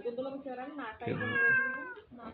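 Domestic cat yowling at another cat face to face, with one long drawn-out call that sags slightly in pitch. It is a hostile warning yowl, the sound of a standoff between two cats that often fight.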